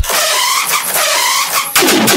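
Dubstep track in a break: the bass cuts out and squealing, swooping synth sweeps repeat in the upper mids. A dense rising build comes in near the end.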